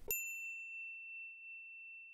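A single bright ding, like a small bell or chime struck once just after the start, ringing out slowly on one high note.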